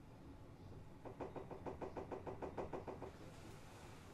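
Low rumble of a Tokyu 3000 series electric train running slowly. About a second in, a fast even run of clicks, about nine a second, lasts for some two seconds.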